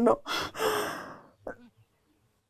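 A woman crying: one long, breathy sob lasting about a second, then a short catch of the voice about one and a half seconds in.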